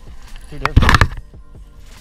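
Sudden loud rush of handling and wind noise on a body-worn camera as a fishing rod is swept back hard to set the hook on a bass, lasting about half a second a little past the middle.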